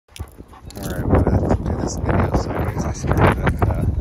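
Mostly a man talking, over a steady low wind rumble on the microphone.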